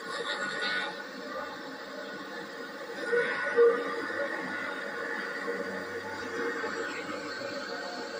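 Old camcorder tape's soundtrack played back through a television speaker: faint background music with steady held tones over tape hiss, with a brief louder sound about three and a half seconds in.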